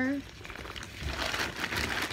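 Plastic packaging crinkling and rustling as food is handled and pulled out of a zippered lunchbox: a run of irregular crackles and rustles.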